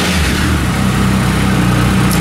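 Triumph motorcycle engine idling steadily just after starting. It started with the clutch lever pulled, a sign that the sticky clutch switch, freshly sprayed with contact spray, is working again.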